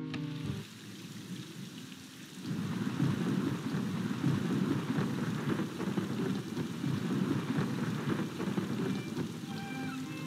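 Heavy rain falling in a film soundtrack, a dense steady downpour that swells up about two and a half seconds in. Faint music fades out at the start and returns near the end.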